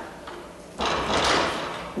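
Handling noise at a lecture podium: a noisy rustle close to the microphone, starting a little under a second in and lasting about a second.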